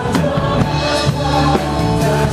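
A live worship band playing a praise song, with the drum kit heard up close and voices singing over guitar.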